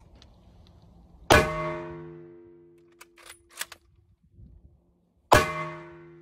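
Two shots from a Springfield .30-06 bolt-action rifle fired through the hole of a giant tyre, about four seconds apart. Each shot has a long ringing tail that fades over a second or two. Between the shots come a few sharp metallic clicks as the bolt is cycled.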